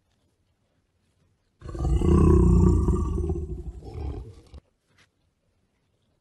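A Siberian husky growling loudly, one low growl of about three seconds that starts about a second and a half in and cuts off suddenly.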